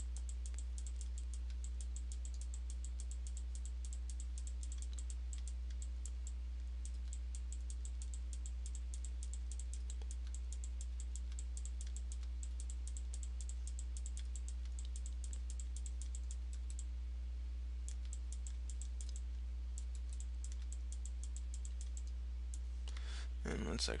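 Rapid light clicking of a computer mouse, several clicks a second with a short pause past the middle, over a steady low electrical hum.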